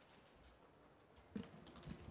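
Near silence: room tone, with a brief faint sound about a second and a half in and a few faint clicks near the end.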